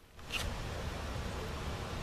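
Steady rushing noise of wind and handling on a handheld camera's microphone as it is swung around, starting after a brief silent gap.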